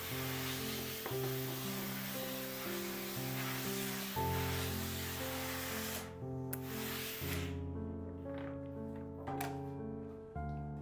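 Background music of sustained notes, over the hiss of a hose-fed steam iron blasting steam onto muslin to shrink it. The steam runs for about six seconds, stops briefly, then gives a second short burst.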